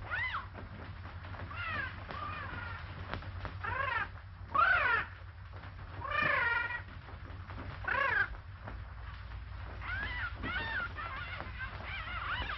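A cat meowing again and again, about ten drawn-out calls that each rise and fall in pitch, the loudest in the middle, over a steady low hum.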